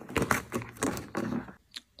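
Cardboard door of an advent calendar being pried open and a small candle taken out: a quick series of clicks, cracks and cardboard scraping, stopping shortly before the end.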